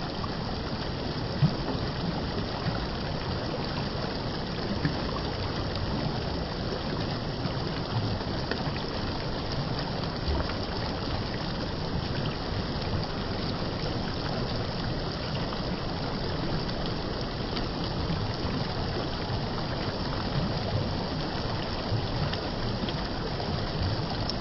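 Shallow stream water running steadily over flat bedrock and between stones, a continuous rush with gurgling where it spills between the rocks. A brief sharp click about a second and a half in.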